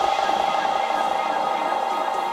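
A house-music remix in a breakdown: a loud, held, buzzy electronic note with a fast flutter in it, and the kick drum gone.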